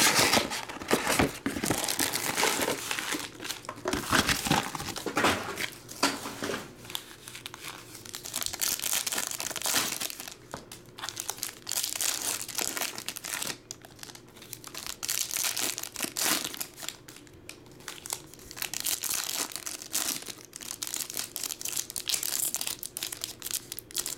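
Foil trading-card pack wrappers (Panini Select basketball hobby packs) being torn open and crinkled by hand, in uneven bursts of crinkling and tearing.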